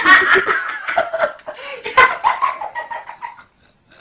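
People laughing loudly in bursts, dying away shortly before the end.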